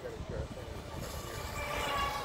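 A distant horn sounding a steady chord of several pitches, swelling in the second half, over a low rumble of wind on the microphone.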